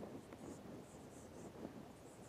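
Faint scratching of a marker pen writing on a whiteboard, in short strokes.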